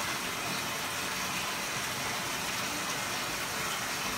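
Whirlpool bathtub jets running: a steady churning rush of water through the tub.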